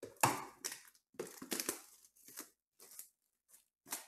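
Clear plastic shrink wrap being torn and pulled off a sealed trading card box: a run of irregular crinkling rips, the loudest a little after the start.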